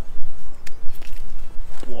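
Low, gusting rumble of wind on the microphone, with a few short clicks in the middle and a man's exclamation "Boah" near the end.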